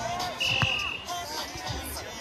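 A volleyball being struck during a rally on sand, with players shouting. A brief high whistle sounds about half a second in.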